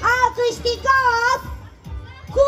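A high, cartoonish voice singing through the stage's loudspeakers: two short phrases with held notes, fading just before the end.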